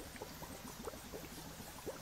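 Faint bubbling of liquid: a steady scatter of small, irregular bubble pops, like a potion brewing.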